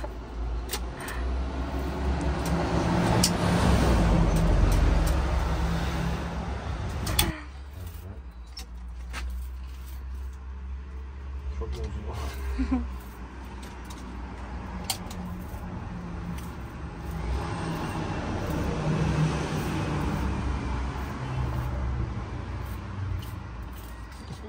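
A motor vehicle engine running close by, with a low rumble that swells over the first seven seconds and drops off suddenly, then swells again near the end. A few light clicks can be heard.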